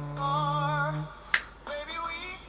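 A cappella group singing over a held low bass note that stops about a second in, followed by a single sharp finger snap.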